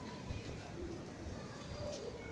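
Street ambience on a busy pedestrian street: a steady low rumble with faint, indistinct voices of passers-by.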